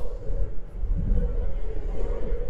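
Steady low rumble of tyre and road noise, with wind, inside the cabin of a Tesla Model 3 electric car cruising at highway speed.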